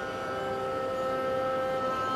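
Carnatic music: a single long steady note held in a raga Hindolam alapana.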